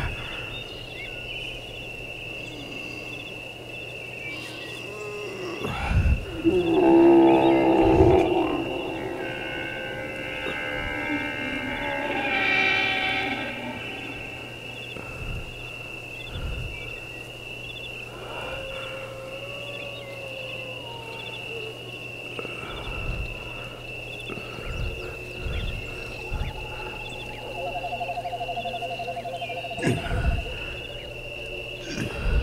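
Film score: a steady high electronic tone over a low hum, with drawn-out pitched sounds that glide up and down, the loudest about a quarter and again about two-fifths of the way in, and a scattering of low thuds.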